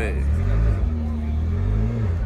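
McLaren supercar's twin-turbo V8 running at low revs as the car creeps forward, its note rising and falling gently about halfway through.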